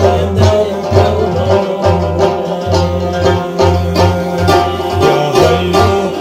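Instrumental music: a plucked rubab playing a melody over a steady low frame-drum (daf) beat, with no singing.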